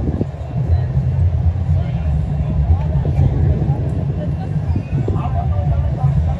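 A heavy, steady low rumble fills the clip, with faint distant voices over it, clearest near the end.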